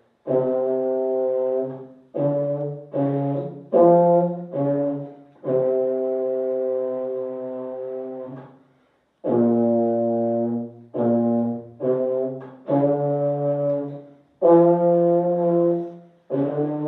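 Solo low brass horn of the euphonium type, played by a young player: a melody of separate tongued notes in the lower register. The middle of the phrase has one long held note, then a short breath break, and the tune goes on in shorter notes.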